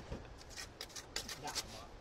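Faint handling noise: scattered light clicks and rustles.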